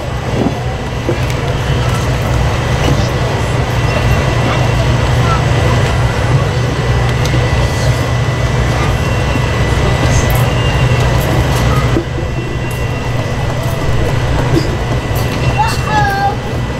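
A steady low rumble under an indistinct murmur of a church congregation, with a few faint clicks.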